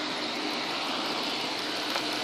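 Chrysler 300's 3.6-litre Pentastar V6 idling steadily, heard from just over the open engine bay.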